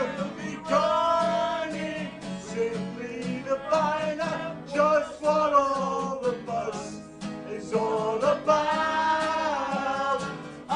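A man singing and strumming an acoustic guitar, with several people in the room singing along.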